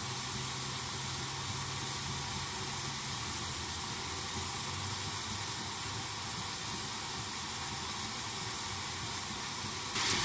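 Chicken frying in a pan, a steady, even sizzle with a faint low hum under it in the first half.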